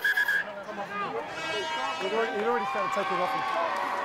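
A referee's whistle blown in a short, broken blast at the very start, signalling the penalty, followed by field-level voices of players and crowd.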